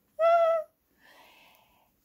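A caged pet bird gives a single short, clear hooting call of about half a second at one steady pitch. A faint rustle follows.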